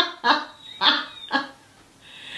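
A man laughing hard in a few short breathy bursts, about four, that tail off around a second and a half in.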